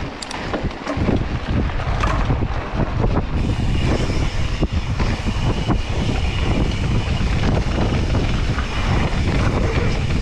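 Wind buffeting the helmet-mounted microphone as a Propain Tyee mountain bike rolls down a dirt trail, its tyres rumbling over the ground. The bike rattles and knocks in quick clicks over the bumps, and the noise grows louder about a second in as speed picks up.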